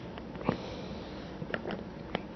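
Steady room noise with a few brief, soft clicks and taps, the loudest about half a second in and two more late on.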